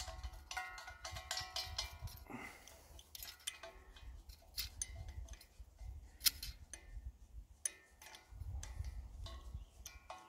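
Irregular sharp metallic clicks and taps of an adjustable spanner working the regulator's left-hand-thread nut onto a propane cylinder valve, the loudest about six seconds in, over a low rumble.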